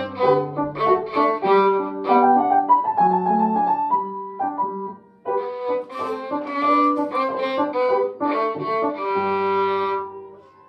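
A violin played by a young student: a tune of short bowed notes, breaking off briefly about halfway through before carrying on.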